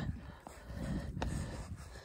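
Wind buffeting the microphone, a low irregular rumble, with a single faint click a little past halfway.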